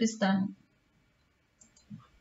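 A woman's voice finishing a sentence in the first half-second, then near silence with a faint short click just before the end.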